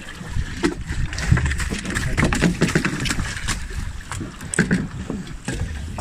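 A fish being landed on a fishing boat: irregular knocks, thuds and splashes as it comes over the side and onto the deck, over a steady low rumble.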